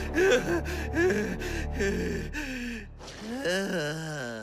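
Several voices gasping and sighing out of breath, a string of short breathy sounds, then one longer drawn-out groan near the end: tired, disappointed students after a failed attempt.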